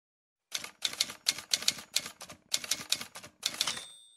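Typewriter sound effect: a quick, uneven run of key strikes starting about half a second in. It ends with a brief ringing tone near the end.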